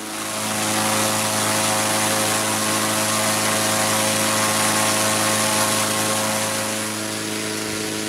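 Engine-driven inflator fan running steadily, blowing cold air into a hot-air balloon envelope: a constant engine note over rushing air. It gets slightly quieter about seven seconds in.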